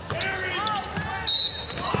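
A basketball being dribbled on a hardwood court during a drive to the basket, with short squeaks from players' sneakers.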